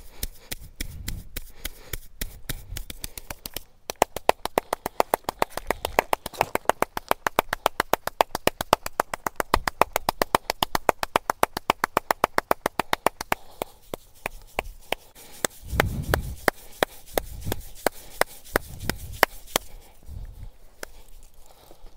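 Hands striking a man's scalp in a head massage: a fast, even run of sharp taps, several a second, from about four seconds in until past halfway, then slower, scattered strikes.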